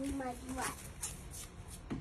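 A child's voice says a few words at the start, then faint shuffling and handling noise.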